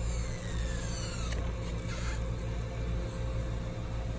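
Stretch-release adhesive strip behind a laptop LCD panel being pulled out and stretched, with a faint falling squeak in the first second or so, over a steady low hum.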